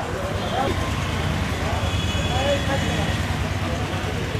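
Steady low rumble of road traffic, with indistinct voices of people talking in the background.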